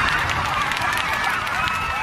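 Fireworks display heard with its crowd: a spatter of crackling from the bursts under many overlapping voices calling out and cheering.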